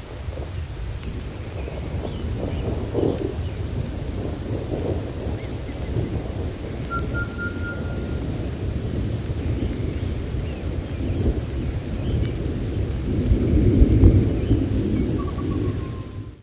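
Thunderstorm: steady rain with low rolling thunder, the rumble swelling to its loudest shortly before the end.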